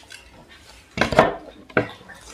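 Tableware handled on a table: a short cluster of clinks and knocks about a second in, and another knock near the end.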